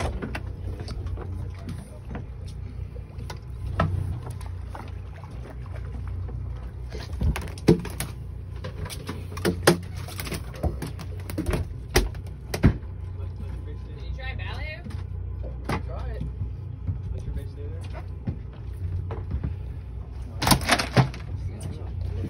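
Mahi-mahi flopping on a fiberglass boat deck, its body and tail slapping in sharp irregular knocks, with a louder flurry of knocks near the end, over a steady low hum.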